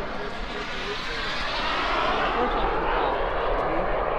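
A model jet's turbine engine running steadily, a rushing noise that grows a little louder over the first couple of seconds, with people talking faintly underneath.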